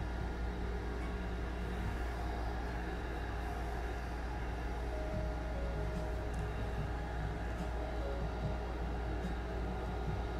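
A steady low machine hum with faint steady tones above it, from the cooling facial wand and its unit running during the skin-cooling step.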